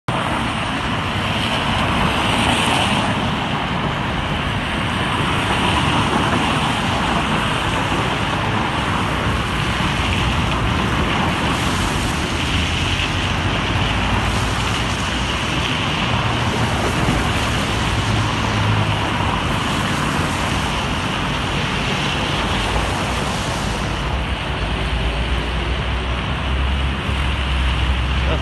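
Steady traffic noise from vehicles passing on a rain-wet road, a continuous tyre hiss, with wind rumbling on the microphone, heaviest in the last few seconds.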